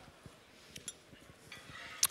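Quiet room tone with a couple of faint clicks a little under a second in, from tasting spoons touching a small dish.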